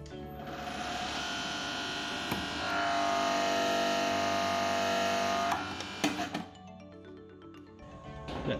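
Busbar machine's hydraulic drive running as its cutter presses through 80 mm busbar. A steady whine starts about half a second in and grows louder about three seconds in as the cutter takes the load. It cuts off suddenly at about five and a half seconds, followed by a few clicks.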